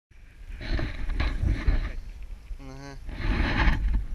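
Wind buffeting an action camera's microphone in gusts, with a deep rumble, broken by a short voiced sound and a laugh near the end.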